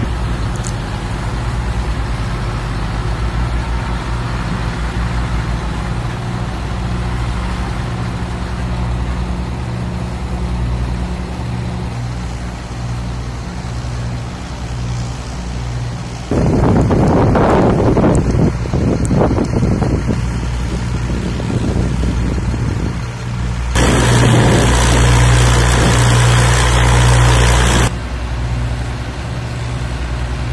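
Military vehicle diesel engines idling with a steady low hum. Two louder, noisier spells break in, one just past halfway and one near the end, each starting and stopping suddenly.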